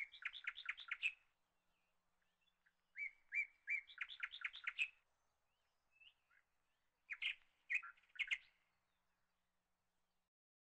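Faint bird chirping: three quick runs of short, repeated chirps, at the start, from about three to five seconds in, and again around seven to eight seconds in.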